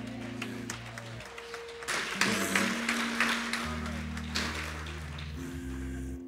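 Soft background music of slow, sustained held chords that change every second or two. About two seconds in, a short burst of clapping and voices from the congregation rises over it and fades.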